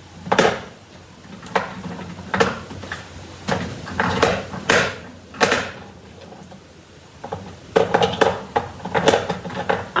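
Rummaging through craft supplies in search of an ink re-inker: irregular clicks, clacks and knocks of small hard items being moved about and set down, busier near the end.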